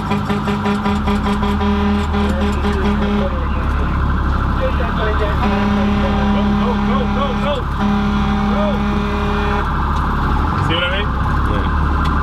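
Fire rescue truck's air horn sounding in three long blasts of about two to three seconds each, over a warbling siren and the low rumble of the truck's engine, signalling traffic to clear the way.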